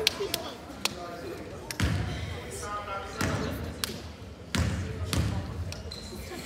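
A basketball bounced on a hardwood gym floor four times, with heavy, echoing thuds, in a free-throw routine at the line. Sharp squeaks or taps and voices are heard around it.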